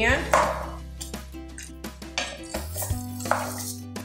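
A metal or plastic spatula scraping and knocking against an aluminium pressure cooker as chunks of beef rib are stirred in the pot, with short scrapes and clicks. Background music with held low notes runs underneath.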